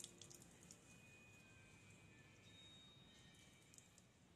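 Near silence, with a few faint clicks of plastic pressure washer parts being handled in the first second.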